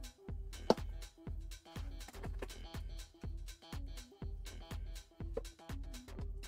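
Background electronic music with a steady beat, and one sharp click a little under a second in.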